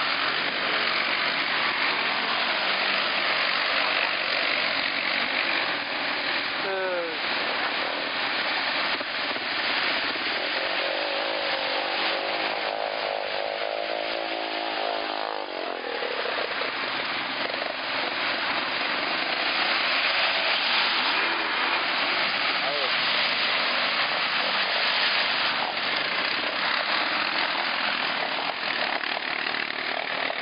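ATV engines running and revving as quads churn through mud on a trail. The sound is a steady, dense noise with a brief lull about halfway.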